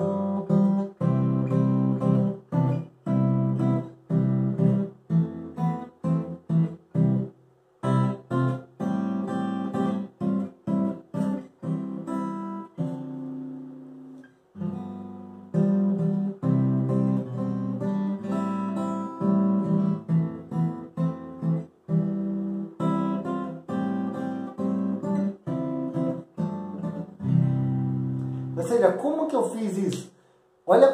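Solo steel-string acoustic guitar playing a song's melody harmonised in block chords (chord melody), the chords struck one after another with short breaks between phrases. About 13 seconds in, one chord is left ringing and dies away before the playing resumes.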